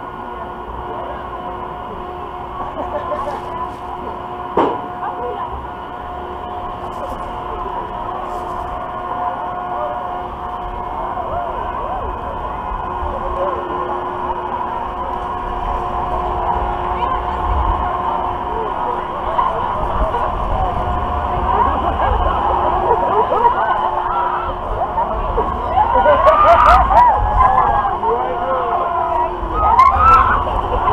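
Spinsanity half-pipe spinning ride starting up and swinging, heard from a camera riding on it. A low wind rumble on the microphone grows as it gathers speed, over a steady hum. Riders' chatter builds into screams and shouts from about twenty-five seconds in, and there is a sharp click about four and a half seconds in.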